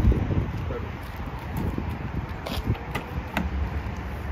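Wind rumbling on the microphone, with a few light clicks about two and a half to three and a half seconds in as the car's driver door is unlatched and swung open.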